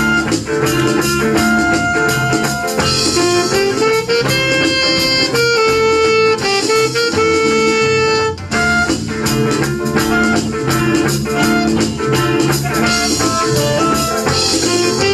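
Live band playing an instrumental break with no singing: electric guitars, bass guitar and drum kit under a reed melody from saxophone and clarinet. The melody holds long notes in the middle of the break.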